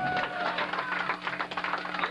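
Steady electrical hum from a stage sound system between songs at a live rock club show. Scattered sharp taps and claps and indistinct crowd voices sound over it.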